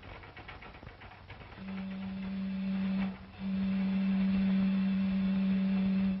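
A ship's whistle sounds two low, steady blasts: a short one of about a second and a half, then after a brief gap a longer one of nearly three seconds. Faint crackle and ticking run underneath.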